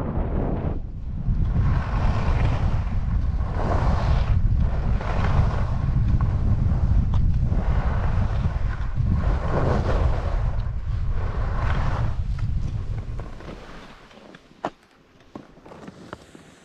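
Wind rushing over a helmet camera's microphone while skiing downhill, with skis scraping over groomed snow in turns that swell about every one and a half seconds. The noise dies away near the end as the skier stops, and a couple of sharp clicks follow.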